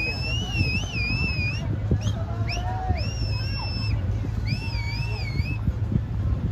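A boat's engine running with a steady low drone, under a series of high, warbling whistled notes: a wavy phrase, two short upward chirps, a held note, then another wavy phrase.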